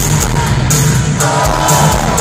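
Live rock band playing loud: electric guitars, bass and drums, with cymbals hit about twice a second. Heard from among the audience, recorded on a phone.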